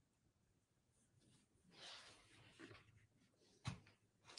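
Near silence, with faint rustling of torn cotton fabric strips being handled about halfway through and a single soft tap just before the end.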